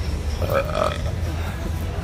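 Steady low rumble of street traffic noise, with a short throaty vocal sound, like a burp or grunt, about half a second in.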